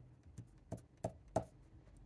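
Five light, quick clicks, about three a second, from handling a fountain pen at a glass ink bottle while refilling it.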